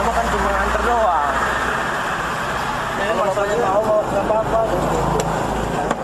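Truck engine idling with a steady low drone and road traffic, under muffled men's voices talking at the cab window. The drone stops abruptly at the end.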